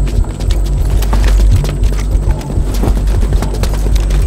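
Hurried footsteps of several people on concrete, heard as a stream of irregular hard knocks over a steady low rumble.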